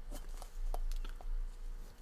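Faint rubbing and a few small scattered clicks as a rubber casing ball, pressed against a watch's screw-down case back with gloved fingers, is twisted to unscrew the case back.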